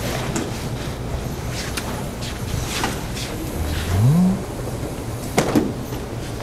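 Steady background noise of a large practice hall, with scattered faint rustles and light knocks from people moving, and a short rising hum about four seconds in.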